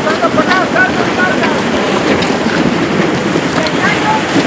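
Steady rushing of a mudflow, muddy floodwater pouring through the street, with faint distant shouting voices over it.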